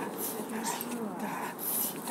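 Belgian Malinois puppy making short pitched cries that rise and fall while it bites and tugs at a tug held by the trainer.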